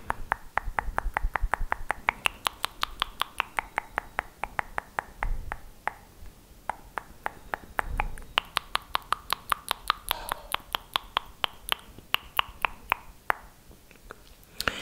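Rapid wet mouth clicks and tongue pops made right against a microphone, about five a second, their pitch shifting as the mouth changes shape, with a brief pause around the middle.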